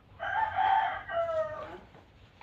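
A rooster crowing once, a single long call of about a second and a half.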